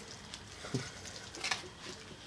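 Faint handling sounds of a pet ferret being held: soft rustling with a few light clicks, and a brief low murmur about three-quarters of a second in.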